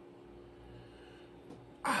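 Quiet room tone with a faint steady hum, and a soft knock about one and a half seconds in as a glass beer bottle is set down on a wooden table. A man's voice starts again near the end.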